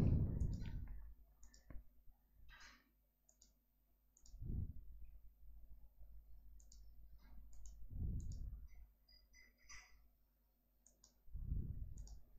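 Faint, scattered clicks of a computer mouse, a dozen or so spread irregularly through the pause, with three soft low thumps at intervals.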